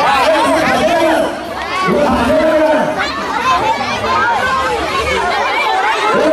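A crowd of schoolchildren and adults chattering, many voices talking over one another at once.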